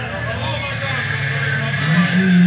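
People talking over a steady low hum of street noise.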